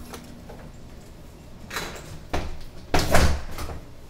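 A door being handled as someone passes through it: a couple of light knocks, then a heavier thud about three seconds in as it is pushed shut.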